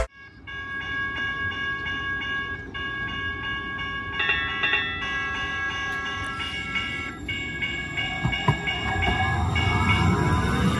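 TriMet MAX light-rail train coming into a station: the electric drive whines in several steady high tones that shift in pitch a few times, over a low rolling rumble. The rumble of wheels on rail grows louder near the end as the cars pass close by.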